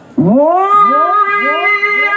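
A male Quran reciter (qari) singing through a PA system, opening his recitation with his voice sliding up into a long, loud, held note about a quarter of a second in. The rising opening scoop repeats every third of a second or so beneath the held tone, like an echo.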